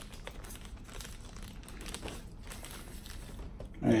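Quiet crinkling of disposable plastic exam gloves, with scattered small clicks and snips of nail nippers cutting thick, fungus-infected toenails.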